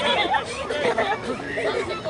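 Indistinct chatter of several people talking at once, their voices overlapping.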